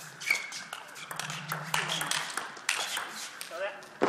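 Table tennis rally: a plastic ball struck back and forth with rubber-faced bats and bouncing on the table, a quick run of sharp clicks, over low hall noise, with a voice near the end.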